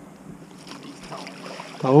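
Faint splashing of a hooked smallmouth bass thrashing at the water's surface beside a bass boat, with a landing net going into the water near the end.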